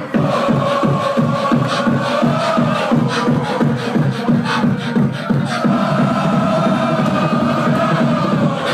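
Live beatboxing: a fast, steady beat of mouth-made kick, snare and hi-hat sounds with a held, hummed tone over it that bends in pitch near the middle.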